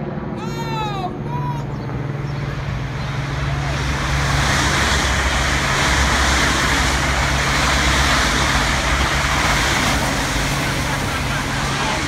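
Trains passing at speed: a steady rush of wheel and air noise that builds about four seconds in and stays loud, over a steady low hum and rumble.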